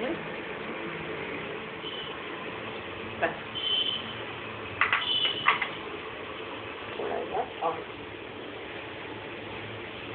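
Steady background room noise with a few short clicks, a couple with a brief high ring, and faint snatches of voice about seven seconds in.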